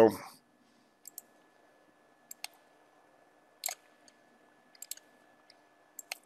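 Computer mouse clicking: a few short clicks, mostly in quick pairs about a second apart, as trendlines are placed on a chart, over a faint steady hum.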